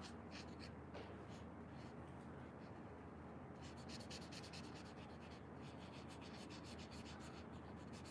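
Pink felt-tip marker (Texta) rubbing on paper in short colouring strokes, faint; the strokes come quicker and closer together from about halfway through.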